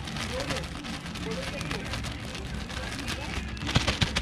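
Wind buffeting the microphone, with the crinkling rustle of a plastic bag of flour-and-cornmeal coating. A sharp click comes near the end.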